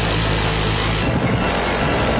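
Machine gun fired from a helicopter door mount in one long burst, heard as a steady, loud buzz.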